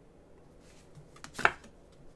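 A round tarot card laid down on the table: one sharp tap about one and a half seconds in, with a faint click just before it.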